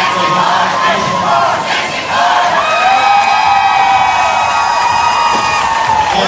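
Arena crowd cheering and yelling. About two seconds in it swells into a loud sustained shout of many voices that rises in pitch and holds.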